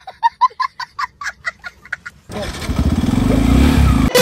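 A small child laughing hard in quick high-pitched cries for about two seconds, then a motorcycle engine's low rumble that grows louder toward the end.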